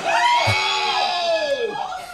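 A small group of people shrieking and cheering in long, high cries that rise and fall, reacting to a champagne cork shooting out of a large bottle.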